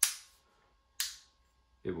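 Two sharp metallic clicks about a second apart from the hammer and trigger action of an unloaded Beretta M9A3 pistol being worked by hand, as in dry-firing.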